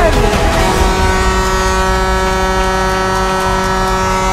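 Arena goal horn sounding one long steady blast after a goal, starting about half a second in, as the announcer's call ends.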